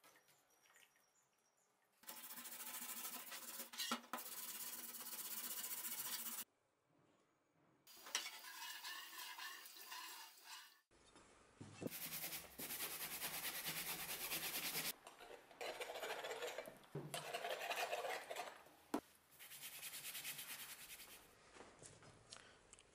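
A rusty steel cleaver blade being rubbed and scrubbed by hand with a cloth, in several separate bouts of steady scratchy rubbing that start and stop abruptly. The first two seconds are nearly silent.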